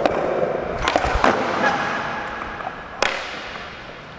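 Skateboard on smooth concrete flat ground: a sharp pop and clacks of the board as a big flip is landed, then the wheels rolling with a steady rumble that slowly fades. One more sharp clack about three seconds in.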